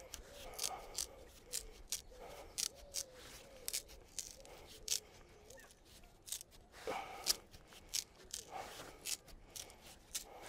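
A green willow rod being split lengthwise with a knife into thatching spars (scollops): a run of irregular sharp cracks and snaps as the wood splits along its grain.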